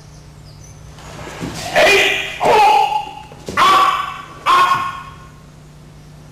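Four short, loud kiai shouts from aikido practitioners striking with wooden swords (bokken) in a paired kumitachi exercise, starting a little under two seconds in and coming about a second apart.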